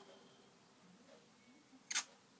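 A faint, nearly empty gap with one short, sharp click near the end.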